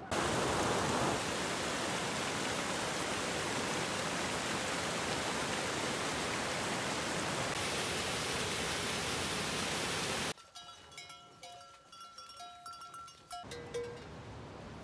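Small waterfall on a mountain stream, rushing with a steady hiss that cuts off suddenly about ten seconds in. After that it is much quieter, with a few faint thin whistling tones.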